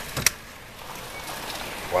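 Two quick sharp clicks from a storm door's glass panel being pushed shut, then a steady hiss of wind-driven rain.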